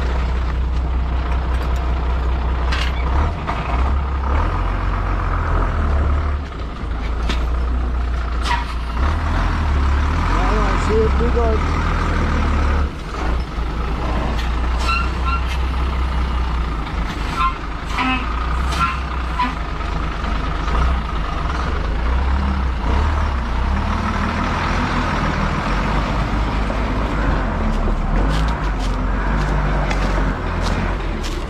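Diesel engine of a DAF ten-wheeler dump truck, a heavy low rumble rising and falling as the truck creeps through a gateway into the yard.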